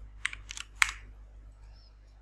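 Computer keyboard keystrokes: four quick key presses within the first second, the last one the loudest, as a password is finished and the login submitted.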